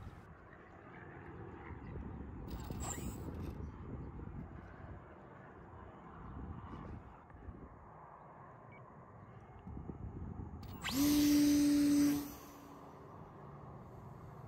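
Brushless electric motor (Surpass C2204 1400kV) spinning a 7x6 folding propeller on a powered RC glider as it climbs out after a hand launch. It is faint and noisy at first, then a louder steady hum lasts just over a second near the end.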